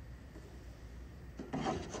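Cloth rustling and rubbing as the folded flag is tucked in the hands, a short scratchy burst about a second and a half in, with a whispered "come on" over it.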